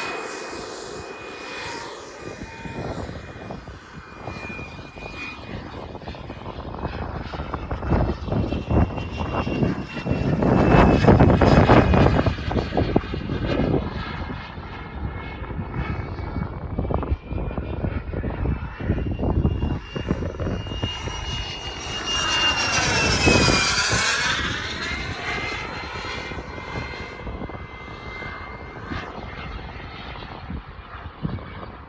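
K102G4 jet turbine of a Top RC Cougar model jet in flight: a steady high turbine whine over jet roar that drifts in pitch. The roar swells loudly about ten seconds in, and about 23 seconds in comes a flyby with the whine dropping in pitch as the jet passes.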